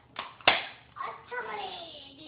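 Two sharp knocks in quick succession, then a high-pitched voice with a drawn-out, slowly falling pitch.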